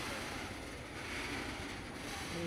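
Loaded BTPN tank wagons of a freight train rolling past on the rails: a steady rumble of steel wheels on track.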